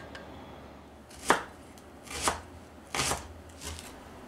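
Kitchen knife slicing a Japanese leek (negi) on a wooden cutting board: four unhurried cuts starting about a second in, each ending with the blade meeting the board, the first the loudest.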